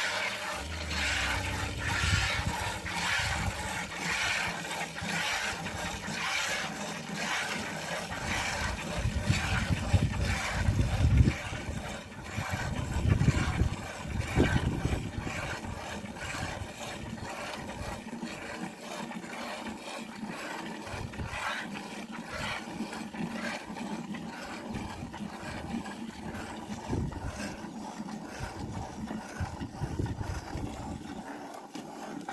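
Hand-milking of a cow into a plastic bucket: milk squirting from the teats in a steady rhythm of about two squirts a second. Low rumbling comes and goes for several seconds around the middle.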